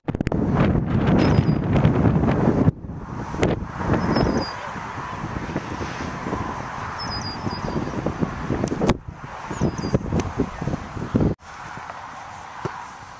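Wind buffeting the microphone outdoors, heaviest in the first few seconds and then dropping away suddenly, with short high bird chirps several times and a couple of sharp knocks.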